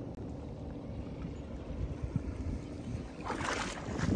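Wind rumbling on the microphone over calm water lapping at the sand's edge, with a brief rise in hiss near the end.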